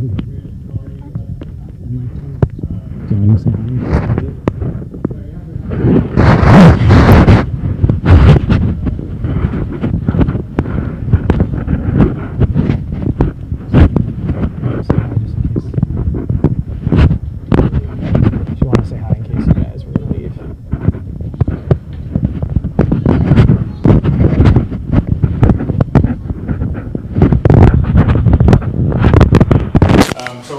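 Indistinct, unintelligible voices of people in a room, mixed with irregular bumps and rustling. There is a louder burst about six to eight seconds in.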